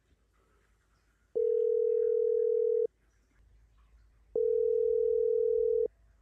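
Telephone ringback tone of an outgoing call ringing before it is answered: two identical steady tones, each about one and a half seconds long, with a pause of about the same length between them.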